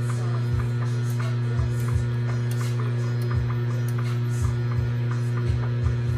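Steady electric hum of a milling machine's motor, with light regular ticking about three times a second and short soft low thumps every second or so, while a thread is tapped in an aluminium block.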